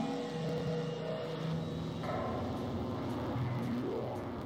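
Dark ambient music from a VCV Rack software modular synthesizer patch: several low held drone tones over a dense noisy wash, with one tone gliding upward near the end.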